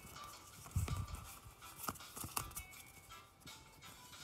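Pokémon trading cards being slid and flipped through in the hands: soft, irregular clicks and rustles of card stock, with a dull low knock about a second in.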